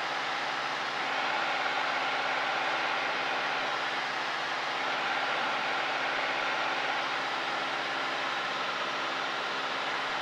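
Cessna 172's piston engine and propeller droning steadily as heard inside the cabin, with a constant rush of air noise over it.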